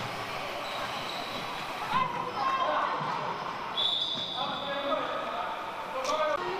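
A handball bouncing on a wooden court floor, a few sharp thuds, amid players' shouts, with a short high squeak about four seconds in.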